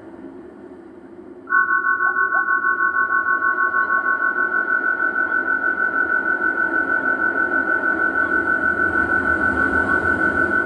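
Live electronic noise music played on a touchscreen tablet and laptop. A low, noisy drone runs underneath, and about a second and a half in a loud, high, steady tone enters, pulsing rapidly.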